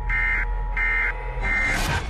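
Electronic warning beeps repeating about one and a half times a second, in the manner of a broadcast alert tone, over a steady held tone and low hum. A rising whoosh sweeps up near the end.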